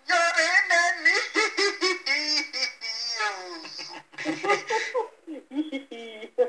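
A high-pitched voice, speaking and laughing in sounds the recogniser could not turn into words.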